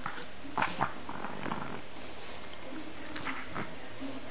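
A Boston terrier and an American hairless terrier play-fighting, with short bursts of dog vocal noise. The two loudest come close together just under a second in, and more follow around one and a half and three and a half seconds.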